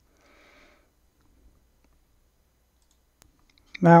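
Computer mouse clicking in a near-silent pause: a couple of faint ticks, then one sharper click about three seconds in. A faint brief sound comes just after the start.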